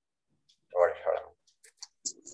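A single short spoken syllable or murmur from a person's voice, set in near silence, followed by a few faint clicks.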